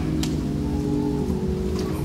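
Soft background music: a chord held steadily on a keyboard, with a light even hiss.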